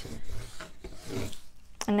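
Cotton fabric being rubbed down by hand onto glued cardboard, a few irregular rubbing strokes as it is worked into the creases.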